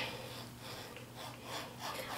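Rotary cutter rolling through fabric on a cutting mat, trimming a seam allowance down to a quarter inch; faint.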